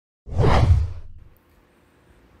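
Whoosh sound effect for a news-bulletin transition graphic, marking the change to the next story. It is a single whoosh with a deep low end, starting about a quarter second in and fading out within about a second.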